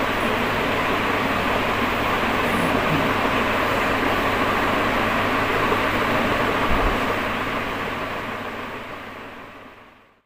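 Steady rushing background noise with a faint low hum, like a running fan or air conditioner, with a soft low bump about two-thirds of the way through; the noise fades out over the last few seconds.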